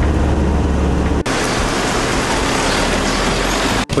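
Toyota passenger van on the move, heard from inside the cabin: a steady low engine drone, which about a second in abruptly gives way to a steady rushing of road and wind noise.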